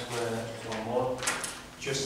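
Speech: a person talking in short phrases.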